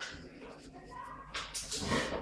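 A Neapolitan mastiff making short, irregular noisy sounds, the loudest about one and a half seconds in.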